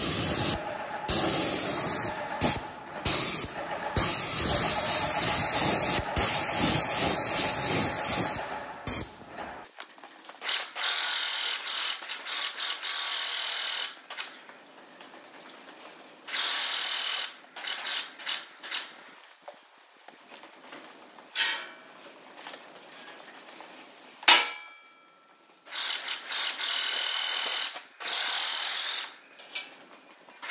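Graco GX21 airless paint sprayer spraying paint through its gun: a steady hiss for about the first ten seconds, then short spurts of a second or two each as the trigger is pulled and released. A single sharp knock with a brief ring about 24 seconds in.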